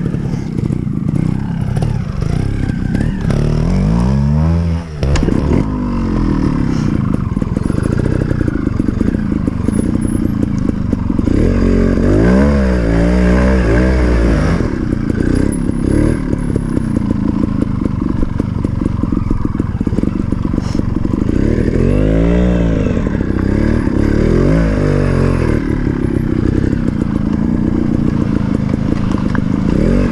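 GasGas TXT 250 trials bike's two-stroke single-cylinder engine running at low revs, with repeated throttle blips that rise and fall in pitch several times. The bike is new and still being run in.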